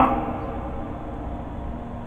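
Steady, even background noise with no distinct tone or rhythm, after a word trails off at the very start.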